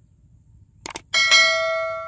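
Two quick clicks, then a bright bell chime rings out and slowly fades: a click-and-bell subscribe-button sound effect.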